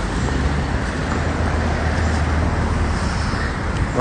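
Steady street traffic noise: a broad rush with a low engine hum underneath, with no break or sudden event.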